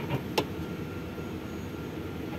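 Steady low background rumble with a single short click about half a second in.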